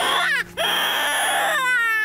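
Loud, high wailing cries, like a crying baby: a short cry at the start, then one long cry that sinks in pitch near the end.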